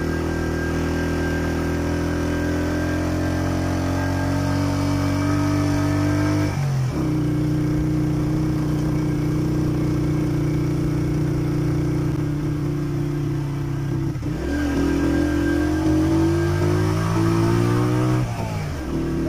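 A road vehicle's engine running under way, steady in pitch, dropping sharply twice (about six and a half and fourteen and a half seconds in) as if easing off or changing gear, then climbing again near the end.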